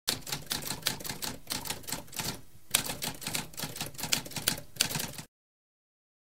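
Typewriter keys clacking in a rapid run of strikes, with a brief pause about halfway and one sharper strike right after it; the typing stops abruptly about five seconds in.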